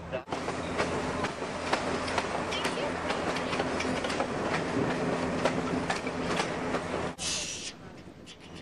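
Excursion train rolling along the track, heard from an open car: a steady rumble with irregular clicks and clacks from the wheels over the rails and a low steady hum. Near the end a short burst of hiss, after which the rumble drops away.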